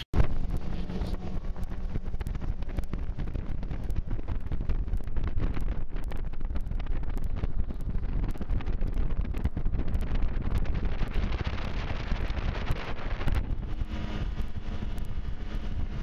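Outboard motor running at speed on a bass boat under way, with water rushing past the hull and heavy wind buffeting on the microphone.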